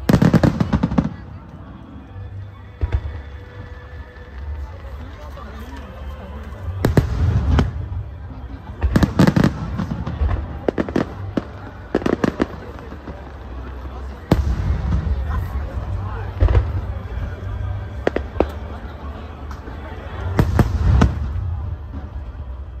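Aerial firework shells bursting overhead: a string of loud booms every one to three seconds, some in quick clusters of two or three, with a low rumble between them.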